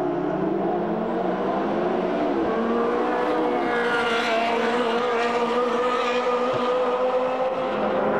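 Ferrari 360 Challenge race cars' V8 engines running at speed, several heard at once with steady, slightly wavering notes. One car passes close about four seconds in.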